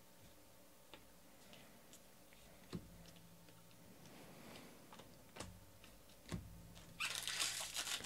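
Faint clicks of trading cards being slid and flipped through by hand, a few sharp ticks a second or more apart, then from about seven seconds in the crackle of a foil card pack being handled.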